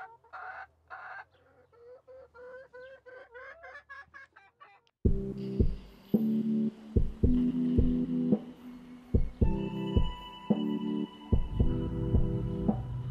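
Silkie hens clucking quietly, a string of short rising calls. About five seconds in, louder background music with a steady beat cuts in and carries on.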